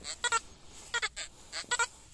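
XP Deus metal detector sounding short, repeated pitched beeps in quick pairs as the search coil sweeps back and forth over a target. The tone marks a non-ferrous ('colour') target rather than iron.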